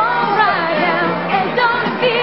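A woman singing over pop backing music.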